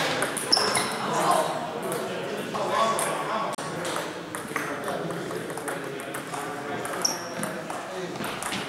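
Table tennis rally: the celluloid ball clicking off paddles and table in quick succession, with a few short high squeaks, over background voices in the hall.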